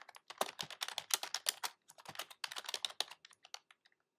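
Typing on a computer keyboard: a quick run of keystrokes entering a short line of text, with a brief pause about halfway through.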